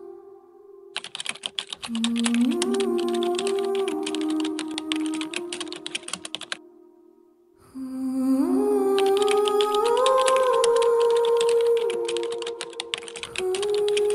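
Rapid keyboard-typing sound effect over background music of held tones that step upward in pitch. The clicking comes in two long runs, broken by a short near-silent pause about halfway through.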